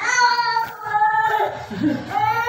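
Dog whining in drawn-out, high-pitched, sing-song notes while begging, with a few pitch changes.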